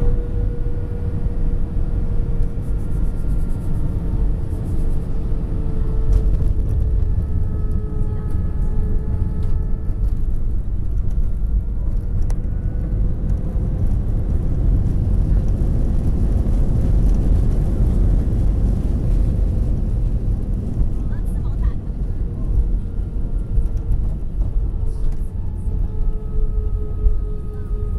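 Airbus A320 cabin noise during touchdown and landing roll: a loud, steady rumble of the airframe and IAE V2500 turbofans with a faint steady whine. The rumble grows louder a few seconds in and swells again past the middle as the wing's ground spoilers are deployed on the runway.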